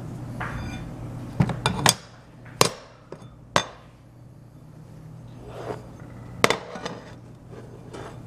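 Sharp metallic clinks and knocks from a square stainless-steel bar and hand tools being handled and set down against a cast-iron drill press vise: a quick cluster of knocks about one and a half seconds in, single ones at about two and a half and three and a half seconds, and another cluster near six and a half seconds. A low steady hum runs underneath.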